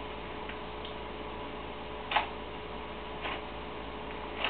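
Thin Bible pages being turned by hand: a few short papery swishes, the loudest about halfway, over a steady low hum.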